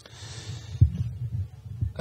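Dull low thumps over a low rumble, two stronger ones about a second apart, with a soft hiss in the first moment.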